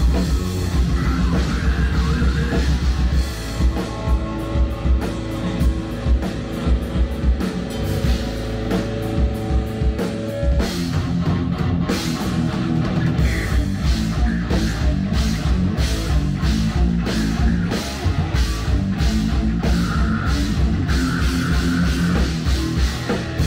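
A live thrash/hardcore band plays loud, with distorted guitar, bass and a drum kit. For several seconds early on a pitched note is held over steady drum beats, and after that the drumming turns fast and dense.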